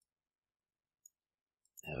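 Near silence with one faint, short click about a second in, then a man's voice starting near the end.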